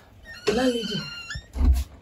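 A woman's voice calling out, with a dull low thump about a second and a half in.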